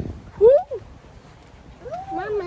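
A single short, high cry about half a second in that swoops sharply upward and then drops, lasting about a third of a second.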